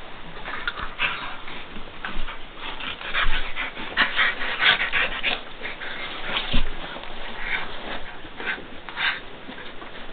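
Dogs play-wrestling: many short, high-pitched whines and yips, thickest in the first half, with a couple of thumps, the loudest about two-thirds through.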